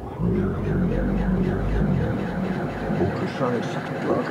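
Modular synthesizer performance. A low droning bass starts suddenly and drops out about three seconds in, under garbled, processed voice fragments that shift in pitch.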